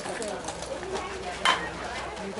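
A softball bat hits a pitched slowpitch softball once about one and a half seconds in: a single sharp crack. Voices from the field carry underneath.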